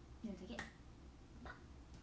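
A brief, quiet murmur from a young woman's voice, with a sharp click about half a second in and another short click about a second and a half in.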